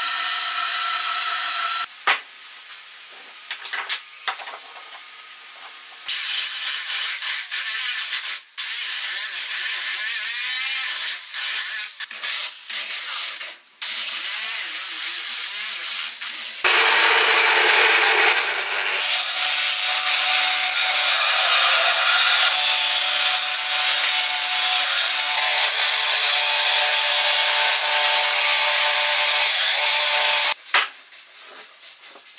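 Power tools working wood in turn: a band saw running and cutting at the start, an angle grinder with a sanding disc sanding the wood through the middle, and from a little past halfway a benchtop spindle sander running steadily, the loudest part, as the curved piece is pressed against its drum.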